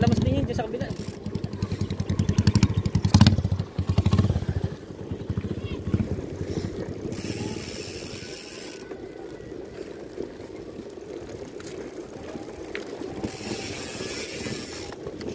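Riding a bicycle with wind buffeting the microphone, a loud pulsing rumble for the first few seconds that then eases. Twice, around the middle and again near the end, there is a spell of the rear freewheel ticking as the rider coasts.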